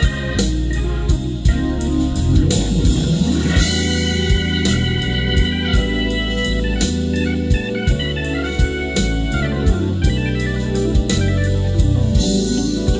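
Instrumental break of a slow vocal jazz recording: held keyboard chords over a drum beat of about two strikes a second, with no voice. It is played back over a car's three-way component speaker system with subwoofer, inside the cabin.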